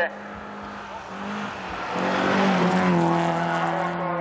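Rally car approaching and passing at speed on a gravel road. Its engine is revved hard and the pitch rises twice as it accelerates, with tyres on loose gravel. It is loudest about two and a half seconds in.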